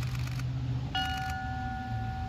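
A large chrome ship's-style memorial bell struck once by hand about a second in, then ringing on with a steady, sustained tone. It is the memorial toll sounded after a fallen serviceman's name is read.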